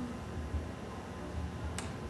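Room tone with a low rumble, and a single sharp click near the end.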